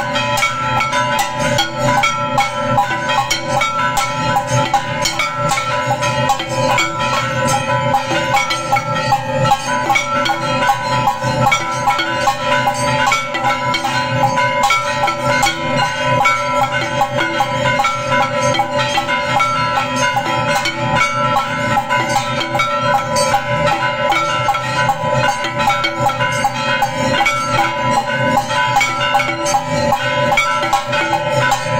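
Temple bells and drums struck in a rapid, unbroken beat during aarti, the bells' ringing tones layered over the strikes.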